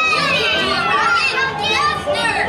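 Many young children's voices shouting and cheering together in a theatre audience, over the show's music.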